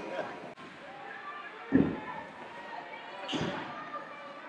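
Two dull thumps in an ice rink, the first about two seconds in and the louder, the second about a second and a half later, over faint background voices.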